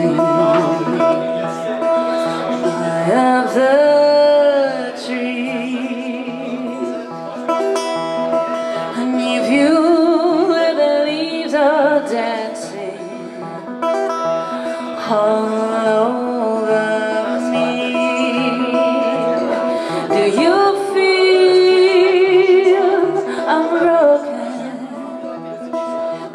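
Live acoustic music: a woman singing, with wavering held notes, over a steel-string acoustic guitar.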